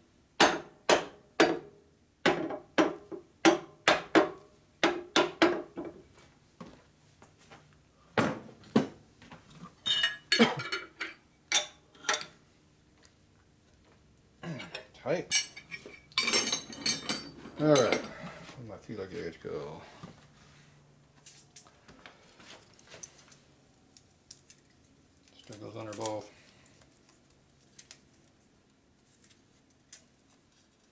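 Steel tools and parts knocking and clinking against a steel angle plate and milling machine table while the plate is re-clamped. There is a quick run of sharp metal knocks over the first six seconds, then scattered clinks and knocks, the last clear one about 26 seconds in.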